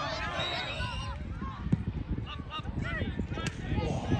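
Scattered shouts and calls from children and adults around a football pitch, over a steady low rumble, with one sharp knock about a second and a half in.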